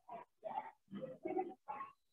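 A faint voice on a video call breaking up into short clipped fragments with dead-silent gaps between them, the speech chopped up by a poor connection.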